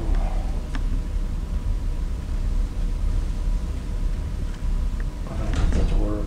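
Steady low rumble of room and sound-system noise with a faint steady hum, a couple of faint clicks, and a brief bit of voice near the end.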